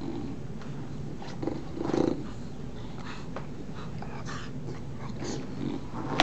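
Two English bulldogs play-fighting, growling with a steady low rumble, broken by several short louder grunts, the loudest about two seconds in.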